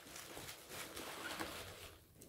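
Faint rustling and crinkling of bubble wrap as a boxed toy figure is lifted out of a packing box.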